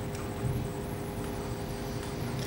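Steady background hum of a room, with a few faint steady tones and a faint wavering high-pitched whine above it.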